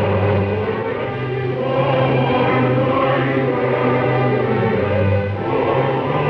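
Opera chorus singing with orchestra over long held low notes, in an old live recording with a dull top end.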